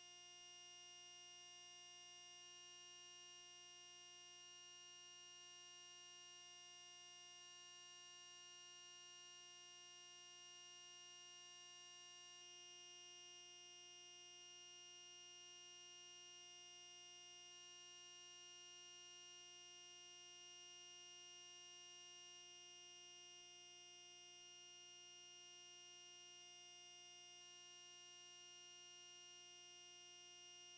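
Near silence: a faint, steady electronic hum made of several fixed tones that never change.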